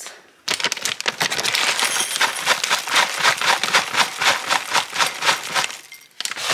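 Dry granola being poured into a ceramic bowl: a dense rattling patter of clusters hitting the bowl that starts about half a second in and lasts about five seconds.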